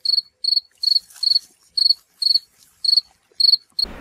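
A cricket chirping, short high chirps at a steady pace of about two a second.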